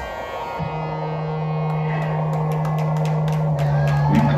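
Live band: a drumbeat stops and a low held drone note comes in about half a second later, growing slowly louder, with a second, lower note joining near the end.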